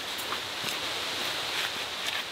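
Steady outdoor forest background: an even hiss with a constant high band, and faint footsteps of a person walking on a dirt and rock trail.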